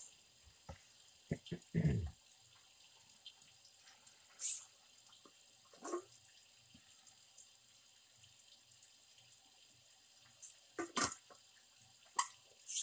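Quiet handling of a metal water bottle during a drink. Soft knocks and rustles come in the first two seconds, then a short hiss about four and a half seconds in and a single gulp of water around six seconds. A few more clicks near the end come as the cap is worked again.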